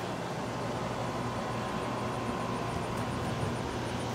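Steady outdoor background hum and hiss, with a faint, fast, even ticking high up.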